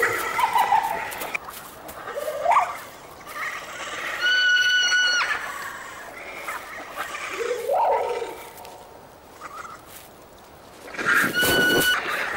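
Calls of a Mononykus as sound-designed for a dinosaur documentary: several short rising squawks and a held, piping cry of about a second in the middle, with a second piping cry near the end.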